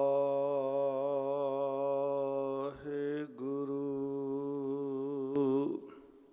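A man's voice chanting a long held note through a microphone, steady in pitch with a slight waver; it breaks off briefly about three seconds in, resumes on a second long note, and stops shortly before the end.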